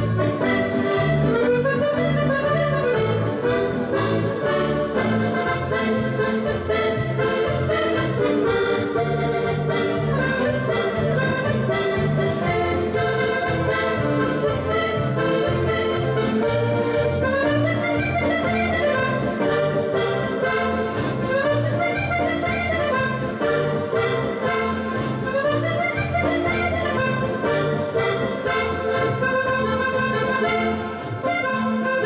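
Live button accordion playing a lively paso doble melody over keyboard accompaniment with a steady, regular bass beat.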